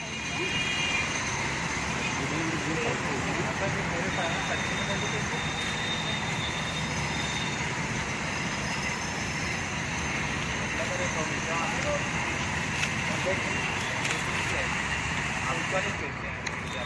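Steady outdoor background noise with faint, indistinct voices.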